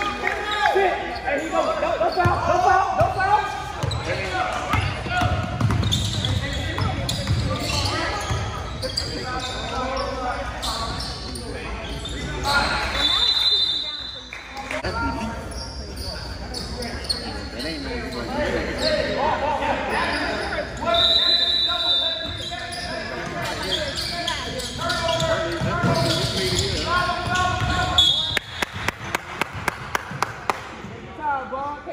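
Basketball game in a gym hall: voices of players and spectators, a basketball bouncing on the hardwood floor, and three short high whistle blasts spread through, the last just before a quick run of ball bounces near the end.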